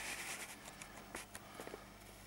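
A few faint, light clicks and taps of handling over a steady low hum.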